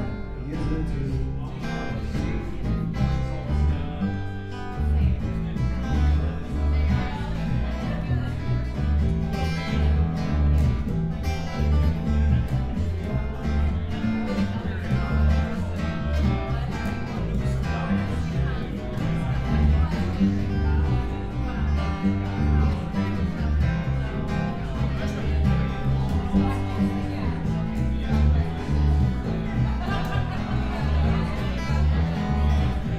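A live band playing a country-style song, with acoustic guitar over a steady, pulsing bass beat.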